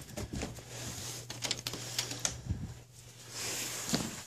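Footsteps and light clicks and knocks while walking across a stage, over a low steady hum through the middle.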